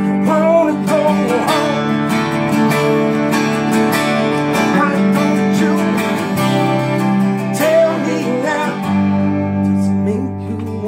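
Three guitars playing a song together: an acoustic guitar strummed steadily under two electric guitars, one of them a Telecaster-style guitar.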